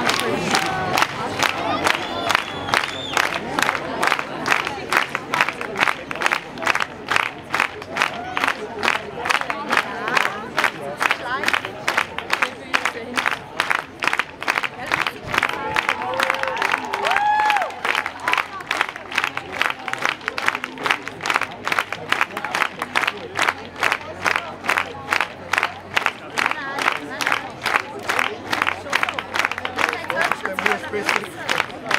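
Large outdoor crowd clapping together in a steady rhythm, with scattered shouts and cheers over the clapping.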